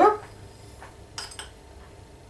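A few light clinks of a metal spoon against a bowl as caster sugar is spooned into a food processor: one faint clink, then two close together just over a second in.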